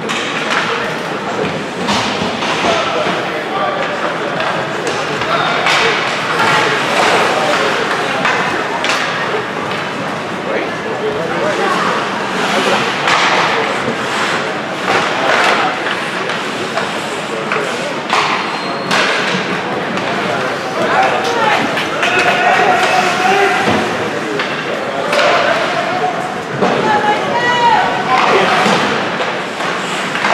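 Indoor ice hockey rink during play: spectators' voices talking and calling out in a large echoing hall, with repeated sharp knocks of sticks and puck against the ice and boards.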